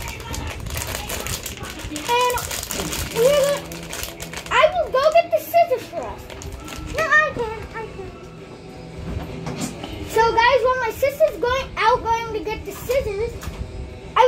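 Plastic wrapping crinkling as a toy's bag is handled and opened for the first few seconds, then high children's voices in short sing-song phrases with no clear words.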